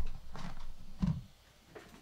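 Handling noise as a power cable plug is pushed into a CoolBot Pro controller: low rustling of cables with two short knocks, the second about a second in.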